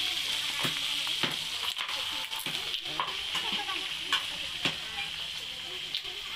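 Irregular sharp knocks of a kitchen knife chopping meat on a wooden cutting board, about once or twice a second, over a steady hiss.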